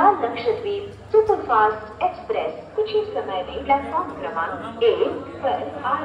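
Railway station public address announcement: a woman's voice reading out a train arrival in a language other than English.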